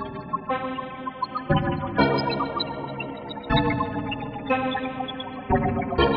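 Fragment, a web-based additive (spectral) software synthesizer, playing a sequence from the Renoise tracker. Rich sustained harmonic tones move to a new note or chord with a sharp attack roughly every second. Delay and reverb from Renoise are added.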